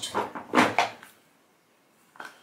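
Two short knocks and clatters of makeup containers being handled, the second the loudest, then near silence for about the last second.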